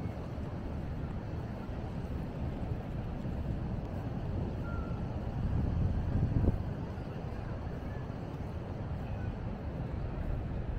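Outdoor ambience of a steady low rumble, swelling to a louder rush about six seconds in with a brief knock at its peak, then settling back.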